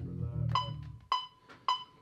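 Electronic metronome beeping three times, evenly about half a second apart (around 110 beats a minute), as a tempo somewhere between 106 and 115 is checked. A low note dies away in the first half second.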